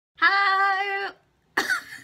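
A young woman's voice holding one long excited exclamation on a single steady pitch for about a second, followed near the end by a short, sharp vocal burst.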